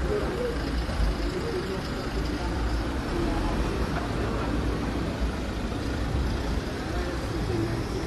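Cars passing slowly on a town street: a steady traffic rumble.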